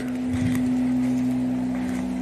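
A steady low hum of a few held tones, with faint hiss underneath.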